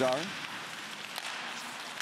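Ice hockey rink sound from the ice surface: a steady hiss of skates carving the ice, with a faint click or two of sticks and puck.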